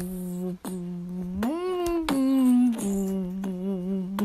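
A person humming a simple tune by mouth: a held low note, a rise to a higher note about a second and a half in, then back down to the low note, held with a slight wobble.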